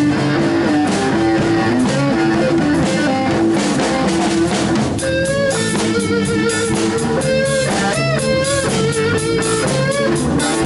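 A live band playing a song, heard from close behind the drum kit: drums and cymbals struck with sticks under electric guitar. A woman's singing voice comes in about halfway through.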